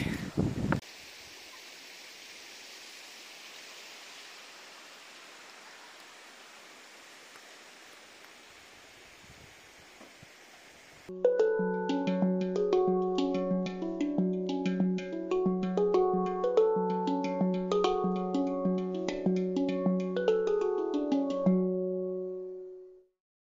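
Handpan played in a steady rhythm of struck, ringing notes over a recurring low note, starting abruptly about halfway through. Before it there is only a faint steady hiss.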